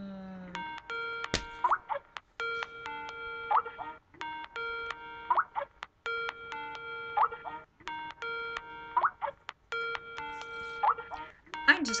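Phone ringtone for an incoming call: a short electronic melody of stepped tones repeating about every two seconds, six times over. A single sharp click a little over a second in.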